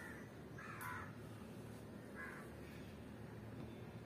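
A few short calls from a bird in the distance, faint over low room noise.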